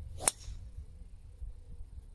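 Golf driver striking a ball off the tee: one sharp crack about a quarter second in, with a short ring from the clubhead. A cleanly struck drive, one he says he absolutely pasted.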